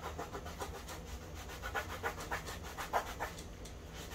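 A cotton rag scrubbing dried latex paint on a plastic trim piece in a rapid series of short rubbing strokes, working a paint cleaner into the paint to lift it.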